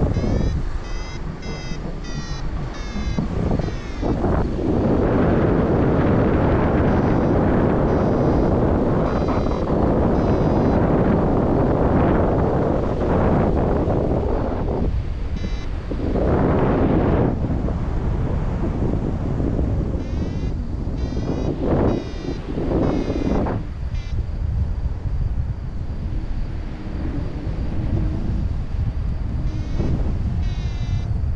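Airflow rushing over the camera microphone during a paraglider flight, loud and gusty. In between, a flight variometer beeps in bursts of quick, rising high beeps.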